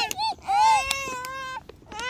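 A young child crying: a short call, then one long high-pitched cry of about a second, and another starting near the end.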